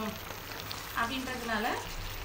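Chicken in a thick gravy sizzling in a non-stick pan while a spatula stirs it.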